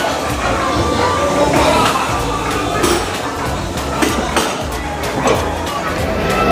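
Busy restaurant din: many people chattering at once, with a few sharp clinks of cutlery or dishes and music playing underneath.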